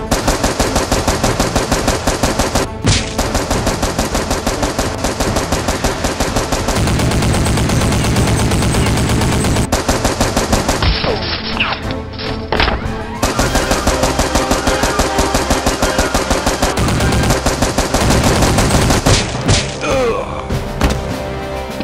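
Rapid automatic gunfire sound effect standing in for toy blasters firing: a fast, steady string of shots several a second, with a few short breaks, over background music.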